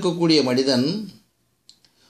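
A man speaking for about a second, then a pause with a couple of faint clicks near the end.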